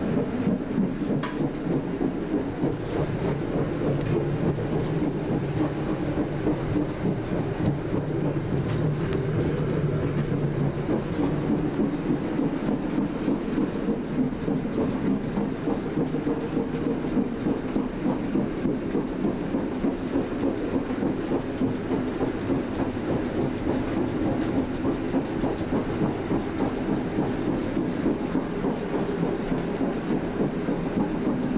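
ALn 668 diesel railcar under way, heard from inside its cab: a steady diesel engine drone mixed with wheel and rail noise from the track.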